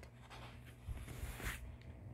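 Faint rustle and rubbing of a paper picture book being handled and shifted in the hand, with a couple of soft knocks, over a low steady hum.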